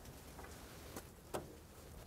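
Quiet background with two faint short clicks, about a second in and a third of a second apart.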